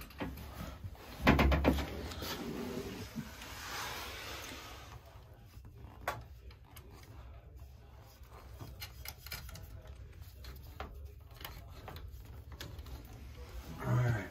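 Knocks and clatter of hands and tools handling equipment, the loudest a thump about one and a half seconds in, followed by a brief rustle and scattered light clicks.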